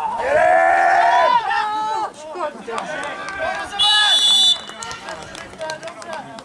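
Players shouting loudly on a football pitch, one long drawn-out yell at the start, then a short blast of the referee's whistle about four seconds in.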